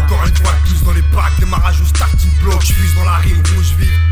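Hip hop track with a heavy, steady bass line and a rapped vocal over the beat.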